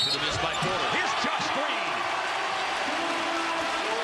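Live basketball game sound in an arena: crowd noise with sneakers squeaking and the ball bouncing on the hardwood court during a fast break to the basket.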